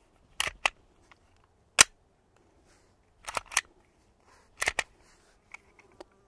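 Glock 19 pistol being reassembled by hand, its slide going back onto the frame: a series of about eight sharp metallic clicks and clacks, several in quick pairs, the loudest one nearly two seconds in.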